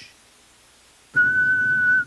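A man whistling one long, steady high note that starts about a second in, after a quiet first second.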